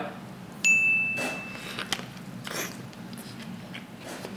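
A single bright ding, one clear held tone, comes in sharply a little over half a second in and dies away about a second later. It sits over soft chewing of a taco.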